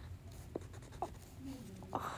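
Wax crayon being pressed and drawn across thick card paper, writing letters stroke by stroke, with a few light ticks as the crayon touches down.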